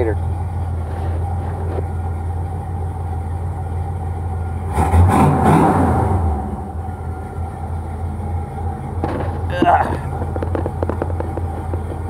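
A G-body car's engine idling with a steady low hum, heard from inside the cabin. About five seconds in, the sound swells louder for a second or so, and short knocks come near ten seconds in.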